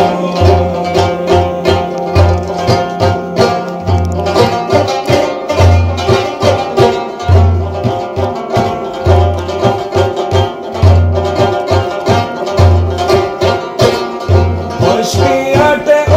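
Instrumental devotional music: a long-necked plucked lute plays a busy melody over a frame drum (daf) beating a steady, repeating low rhythm.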